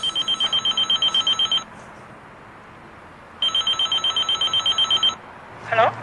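Door-entry intercom panel sounding its call tone to a flat: two rings of a rapidly warbling electronic beep, each about a second and a half long, with a pause of about two seconds between. A short gliding sound comes near the end.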